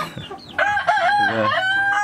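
A rooster crowing: a few short wavering notes starting about half a second in, then one long held note.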